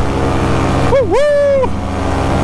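Paramotor engine running steadily in flight, a constant drone. About a second in, the pilot's voice draws out a single word over it.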